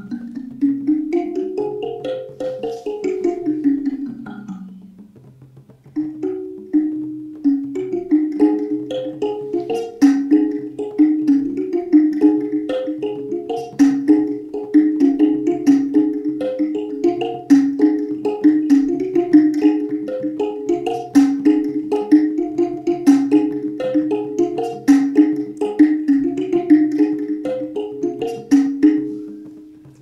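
Sanza (sanndje), a box-shaped thumb piano, plucked. A run of notes climbs and falls back down, a short pause about five seconds in, then a little melody repeats steadily over a pulsing low note.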